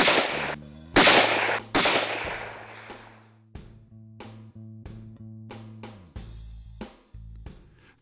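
Three rifle shots from a scoped centerfire bolt-action rifle in quick succession within the first two seconds, each with a short echoing tail: test shots to confirm the freshly adjusted scope's zero. Background music plays underneath and fades out near the end.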